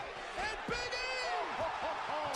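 Wrestling TV commentary playing faintly: a man's voice talking over a steady low background of arena noise.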